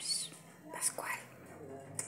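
A person whispering, starting with a hissed 'pss' of the kind used to call a cat, then more soft breathy whispering about a second in.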